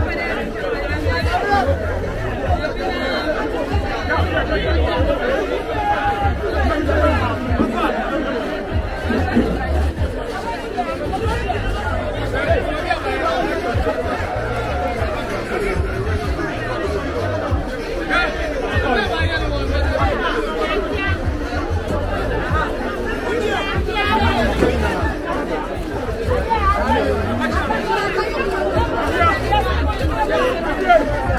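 Chatter of many voices from a market crowd, steady throughout, with an uneven low rumble underneath.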